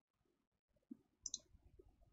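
Near silence, broken by two faint, quick computer mouse clicks a little over a second in.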